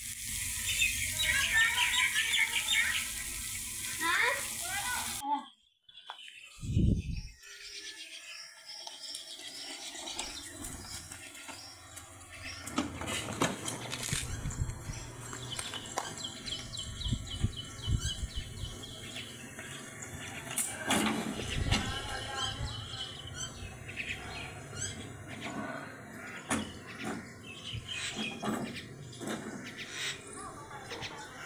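Steady hiss of heavy rain that cuts off abruptly about five seconds in. After a single low thump, birds chirp with scattered knocks and faint voices.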